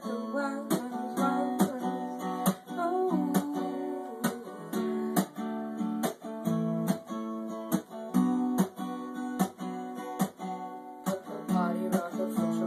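Acoustic guitar strummed in a steady rhythm, about two strums a second, with the chords ringing between strokes.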